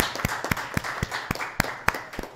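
Audience applause: a dense patter of hand claps with sharper single claps standing out, gradually fading.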